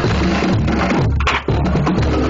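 High school marching band playing: drum strikes keep a steady beat under sousaphones and brass. There is a brief break about a second and a half in, and then the band comes back in with a hit.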